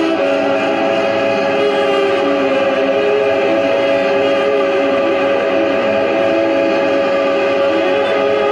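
Saxophone and electronics playing together: one long held note with a steady pitch over a dense, sustained layer of lower tones that slide and shift.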